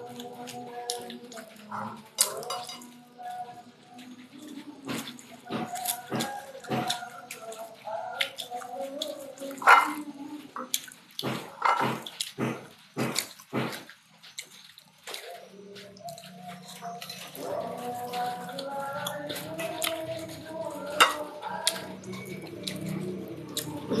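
Close-up eating sounds: wet lip smacks and chewing clicks as rice and sambal are eaten by hand, with wavering pitched sounds in the background and a steady low hum coming in a little past halfway.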